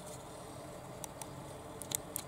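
Quiet, steady room noise with a few faint, short clicks, two about a second in and a small cluster just before the end.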